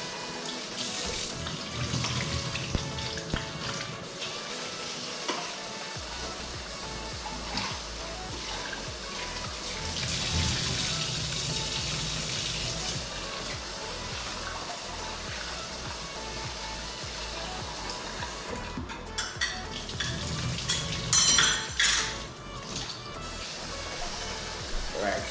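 Kitchen tap running into a metal saucepan while rice is rinsed, with the rinse water tipped out into a stainless steel sink. A few sharp knocks of the pot near the end are the loudest sounds.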